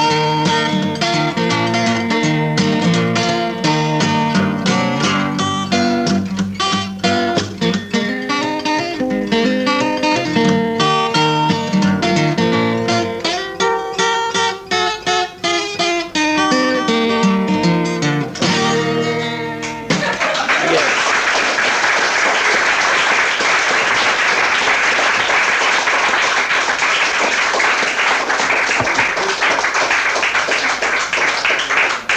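Acoustic guitar played with plucked notes and chords, ending about two-thirds of the way through on a falling run. Audience applause then starts abruptly and keeps going.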